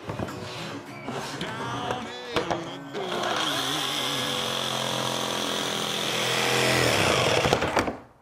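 Jigsaw cutting through a red oak panel along a curved line. It runs steadily from about three seconds in and cuts off just before the end.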